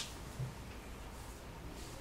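Quiet room tone with a brief crisp paper rustle right at the start and a soft low bump about half a second in.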